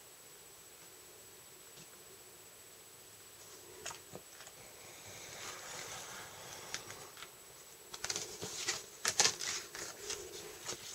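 Faint scratching of a craft knife blade scoring cardstock along a ruler on a cutting mat, starting a few seconds in. Near the end come sharper clicks and rustles as the card and ruler are handled.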